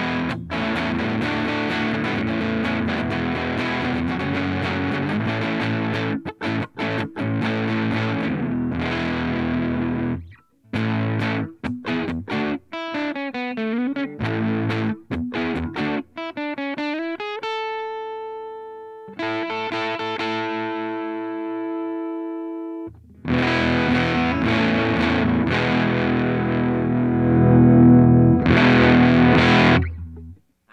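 Squier Paranormal Super-Sonic electric guitar played through a Dogman Devices Earth Overdrive pedal into a Strymon Iridium amp simulator, giving a distorted tone. Dense driven riffing stops about ten seconds in. Choppy notes bent up and down in pitch follow, then chords left ringing and fading. Heavy dense playing returns at about 23 seconds and grows loudest near the end.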